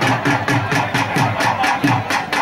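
Drum beaten in a fast, even rhythm, about four to five strokes a second, each stroke with a low thud, and a wavering higher tone running over it.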